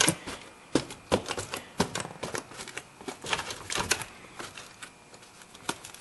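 Irregular clicks and knocks as a battery shield is handled and fitted around a car battery in its tray, a few sharp taps a second.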